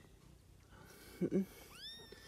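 A young kitten mewing: one short, high-pitched cry that rises in pitch near the end, after a brief low voice sound about a second in.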